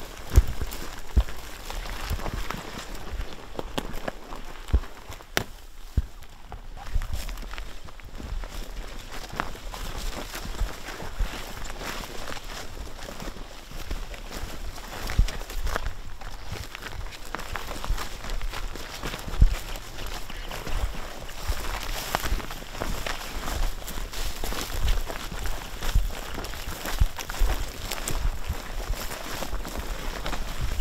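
Several people walking through dry grass: irregular crunching footsteps and rustling stalks, with wind rumbling on the microphone.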